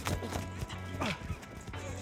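Background music over football practice sounds: a few sharp knocks of hands and pads in a blocking drill, and a short shout that falls in pitch about a second in.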